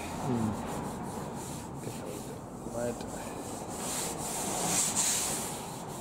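Sandpaper rubbed by hand back and forth over the steel bodywork of a 1974 Ford Cortina Mk3, wearing off a black guide coat. The strokes get louder and harsher toward the end.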